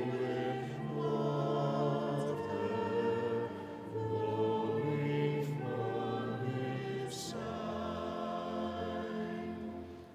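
Choir singing a slow hymn in a large, reverberant church, in held phrases of a second or two each over a sustained low line.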